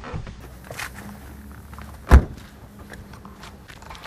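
A Peugeot's driver door shut from outside with a single loud thunk about two seconds in, the car's engine switched off. Faint shuffling from the driver climbing out comes before it.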